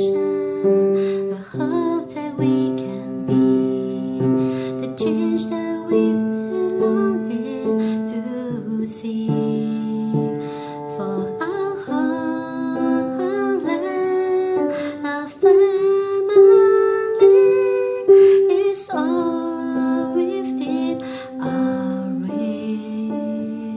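Simple block chords played with the left hand on a piano, changing every second or two, with a woman singing the melody along.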